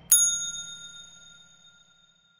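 A single bright bell ding, a sound effect for the notification bell of a subscribe animation. It is struck just after the start and rings out, fading over about a second and a half.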